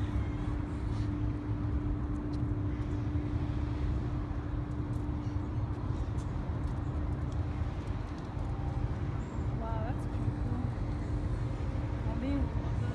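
Outdoor city ambience: a steady low rumble of traffic with a constant hum, and a brief wavering chirp about ten seconds in.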